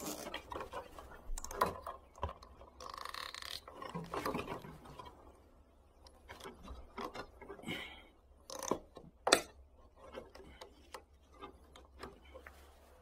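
Plastic cable tie being threaded and pulled through its ratchet head on a plastic bottle, giving irregular clicks and plastic handling noise, with a rustling stretch about three seconds in and two sharp clicks near the end, the second the loudest.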